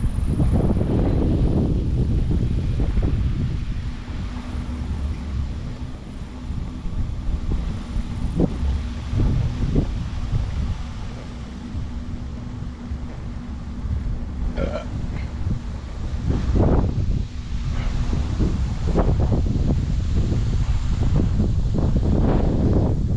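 Wind buffeting the microphone of a GoPro on a bicycle ridden slowly along an asphalt road: a low, gusty rumble that swells and eases irregularly.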